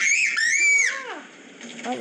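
A person's loud, high-pitched shriek in two parts, the second sliding down in pitch.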